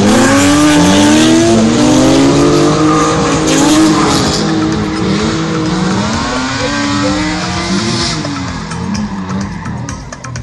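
Drift car's engine revving up and down hard with tyres squealing as it slides through the corners, the sound fading away over the last few seconds.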